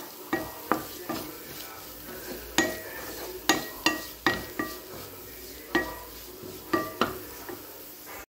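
A flat spatula stirring diced beetroot in a nonstick frying pan, scraping and knocking against the pan about a dozen times at an uneven pace. Each knock leaves a brief ring from the pan, over a faint sizzle of the vegetables frying in oil.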